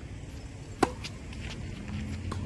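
A tennis racket striking the ball: one sharp, loud crack a little under a second in with a brief ring of the strings, followed by a few faint ticks.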